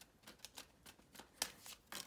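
Tarot cards being handled, drawn from a deck and laid on the table: a run of faint, quick card snaps and taps, the loudest about one and a half seconds in.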